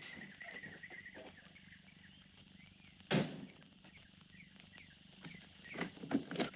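Birds chirping in a quick run of short, high notes over quiet outdoor ambience. A single sharp thump about halfway through.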